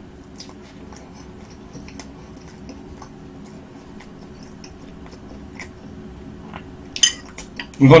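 A metal fork clicking lightly against a plate now and then, then a few louder clinks about seven seconds in as the fork is set down on the plate.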